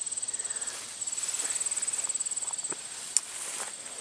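Insects trilling steadily in a high, rapidly pulsing note that breaks off briefly twice, over soft footsteps of someone walking, with one sharp click about three seconds in.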